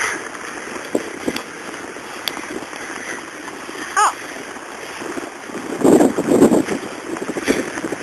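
Snowstorm wind buffeting the microphone: a steady rushing noise, swelling into a stronger gust about six seconds in.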